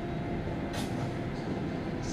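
Strong typhoon back-side wind: a steady low roar of wind through trees, with a brief louder hiss of a gust a little under a second in.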